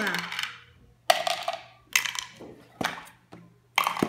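Plastic bottle caps dropped one after another into plastic jars, each landing with a sharp plastic clatter and a brief ring: about six hits, roughly a second apart.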